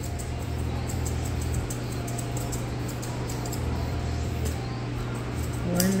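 A steady low hum, with a few faint snips of grooming shears as the hair around a dog's foot is trimmed.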